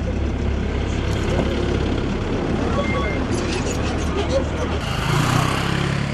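Outdoor field sound: a steady low engine rumble under faint indistinct voices. Near the end it changes to a brighter hiss.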